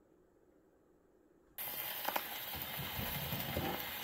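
Near silence, then about a second and a half in the needle meets the shellac 78 rpm record and the surface noise starts abruptly: a steady hiss with a few clicks and crackles from the lead-in groove, heard through an Orthophonic Victrola acoustic phonograph's reproducer before the music begins.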